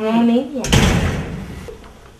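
A house door shutting with a sudden heavy thud about three-quarters of a second in, after a brief vocal sound at the start.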